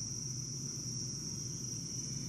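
Insects, likely crickets, keeping up one steady high-pitched trill over a faint low hum.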